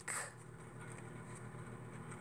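Faint rustle of a paper cut-out and sticky tape being folded and pressed down by hand, over quiet room tone.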